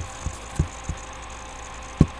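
Three soft low thuds about a third of a second apart in the first second, then a sharper thud at the very end, over a steady low hum.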